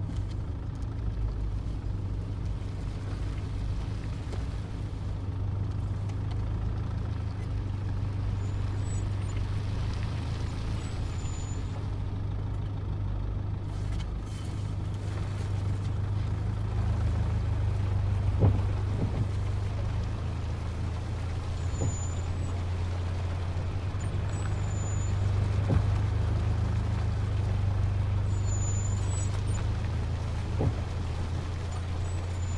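Low, steady rumble of a car engine running, heard from inside the car, with a couple of short dull knocks in the second half.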